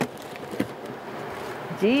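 Packaging handled as a tire inflator's box is tipped out: a sharp knock at the start, then faint rustling and scraping of foam packing blocks and plastic wrap with a light tick or two.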